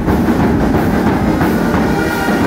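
A large brass band with bass drums playing loudly, a dense, crowded wash of sound driven by a steady drum beat; held brass notes stand out more clearly near the end.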